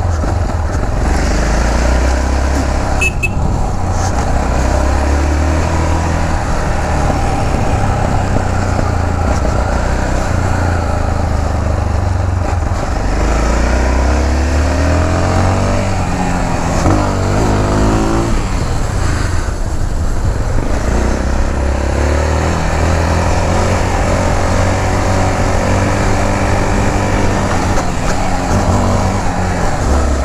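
Yamaha XT660's single-cylinder engine running under a rider, its speed stepping up and down through the gears, with a quick rev up and back down about halfway through. Wind and road noise on the microphone throughout.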